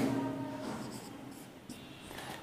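Marker writing on a whiteboard: a few faint, short strokes.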